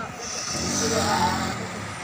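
A motor vehicle engine swells in pitch and level for about a second and a half, then eases off.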